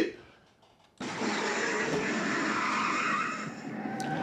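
Film soundtrack of a 1968 Ford Mustang fastback doing a burnout, played back through speakers: tyres squealing with the car's engine running underneath. It starts about a second in and fades near the end.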